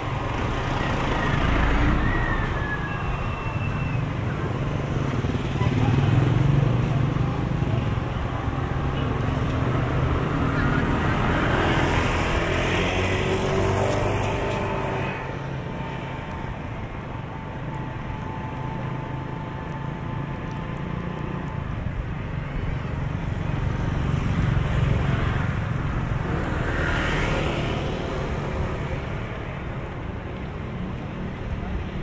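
Street traffic heard while riding along a city road: a steady low hum of engines and tyres, with motorcycles and other vehicles passing, and two louder swells of noise as vehicles go by close, about twelve seconds in and near the end.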